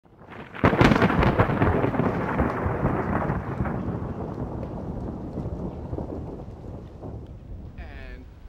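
Thunderclap: a sudden crack a little under a second in, then a rolling rumble that slowly fades over several seconds.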